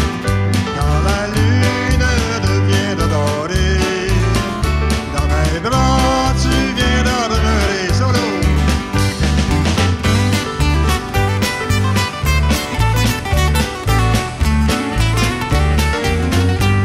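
Country-style folk song played live: a man singing over strummed acoustic guitars, with an electric bass keeping a steady beat and a keyboard behind. The voice drops out after about eight seconds, and the band carries on with a busier strummed instrumental passage.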